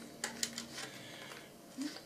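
Faint clicks and light handling noise as an FPV cloverleaf antenna is screwed by hand onto a drone leg's threaded antenna connector; a few small clicks come in the first half second.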